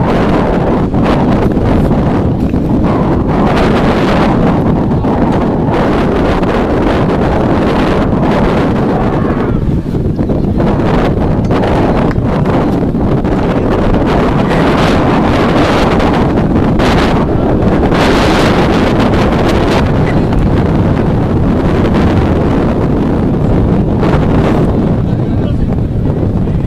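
Wind buffeting the camera's microphone: a loud, steady low rumble with gustier stretches throughout, with faint voices underneath.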